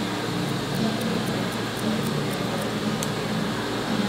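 Hair-cutting scissors snipping into the ends of a held section of hair in point cutting, light quick snips at about four a second that stop near the end, over a steady low hum.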